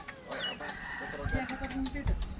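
A rooster crowing, one drawn-out call in the second half, with a short high chirp before it.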